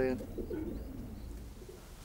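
Racing pigeons cooing faintly just after a man's last spoken word, the sound dying away about a second in.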